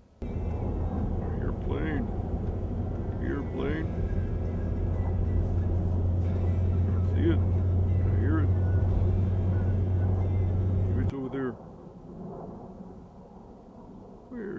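A loud, steady low rumble that starts abruptly and cuts off suddenly about eleven seconds in, with short voice-like calls over it.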